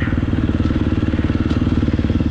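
Motocross dirt bike engine running steadily at low speed under light throttle, its exhaust pulsing evenly as the bike rolls slowly.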